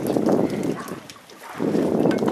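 Wind buffeting the microphone in gusts. It drops away briefly just past a second in, then picks up again.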